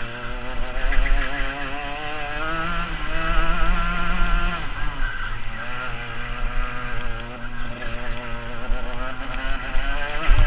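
Rotax FR125 Max kart's 125 cc single-cylinder two-stroke engine, heard close up from the kart itself, running hard through a run of corners. Its note wavers as the revs rise and fall, drops about halfway through as the kart slows for a bend, then climbs again, with another dip near the end.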